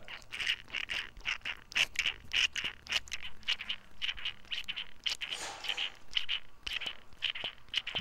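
The primer diaphragm on a Stihl FS45C trimmer carburetor being pumped by thumb, giving a quick run of small clicks and squelches, about three a second. The primer valves are working.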